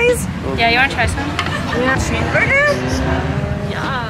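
Voices and music over a steady low rumble, like a car's road and engine noise heard from inside the cabin.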